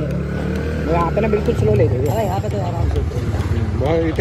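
Motorcycle engine running steadily as the bike rides along at low speed, with a man talking over it.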